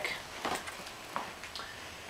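Faint handling sounds, with a couple of soft clicks, as the folding bike's front wheel is lifted out of the fork after its quick-release lever has been unwound.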